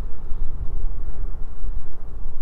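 Wind buffeting the microphone: a gusting low rumble that rises and falls.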